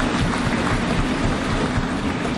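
Audience applause in a large hall, a dense steady clatter of many hands, possibly with desks being thumped.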